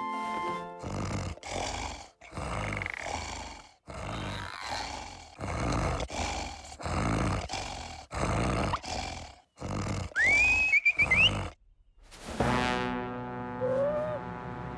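Exaggerated cartoon snoring: a run of loud, noisy snores, roughly one a second, with a rising whistle on a snore near the end. After a brief pause, a few seconds of musical tones follow.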